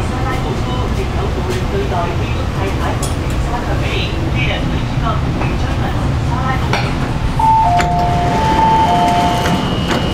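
Steady low rumble of an MTR underground train and station, with passengers' voices. About seven seconds in, a two-tone electronic chime starts, alternating high and low notes several times.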